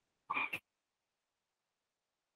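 A brief vocal noise from a man at a microphone, lasting about a quarter of a second and ending in a sharp click.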